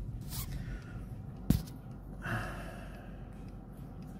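Camera or phone being handled: a breath, then a single sharp knock about a second and a half in, and a short faint vocal sound, over a low steady rumble.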